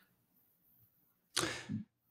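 Near silence, then about one and a half seconds in a short, sharp breath drawn in, heard as a brief hiss that fades over about half a second.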